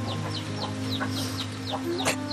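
Chickens peeping and clucking: a quick run of short, falling high-pitched peeps, several a second, with a steady low drone underneath.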